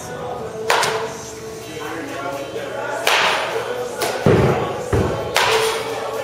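A baseball bat striking pitched balls in a batting cage: about four sharp cracks a second or more apart, with duller thuds of balls hitting the netting and padding in between.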